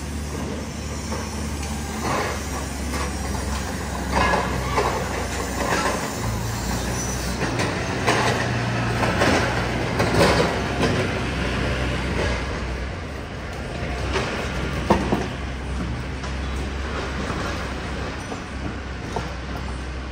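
City street traffic: a steady low engine rumble with vehicles passing, swelling and fading. A short sharp click about three-quarters of the way through.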